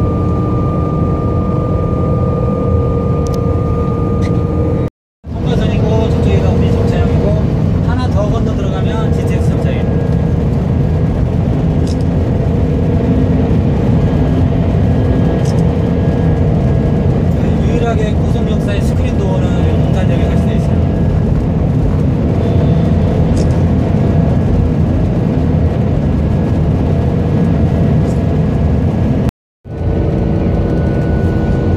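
SRT (KTX-Sancheon type) high-speed train running at speed through a tunnel, heard from inside the driver's cab: a loud, steady rumble, with a steady high whine over it in the first few seconds. The sound drops out completely twice, briefly, about five seconds in and near the end.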